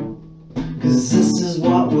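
Acoustic guitar being strummed, chords ringing; the playing drops back briefly just after the start, then the strumming picks up again about half a second in.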